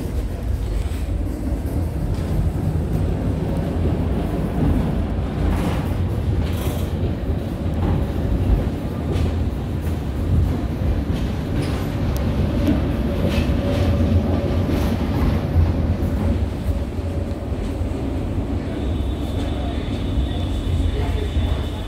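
Tram running along its track, heard from inside the car: a steady low rumble of wheels and running gear, with scattered short clicks and rattles. A high steady tone comes in near the end.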